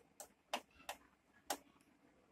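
Four faint, irregular clicks: a screwdriver and small screws being handled against the plastic back of a flat-screen TV during assembly.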